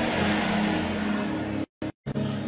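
Background music: a held, sustained chord with no rhythm, the sound cutting out to silence twice very briefly near the end.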